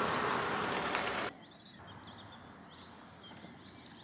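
A steady rushing noise cuts off suddenly about a second in, leaving faint outdoor background with a few faint bird chirps.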